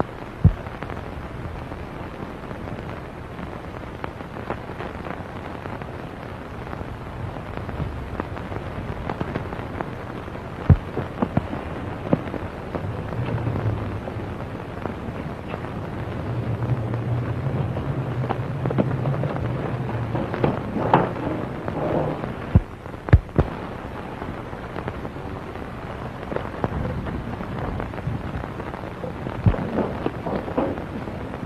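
Hiss and crackle from an old optical film soundtrack, with scattered sharp pops, a few much louder than the rest, and a low hum partway through.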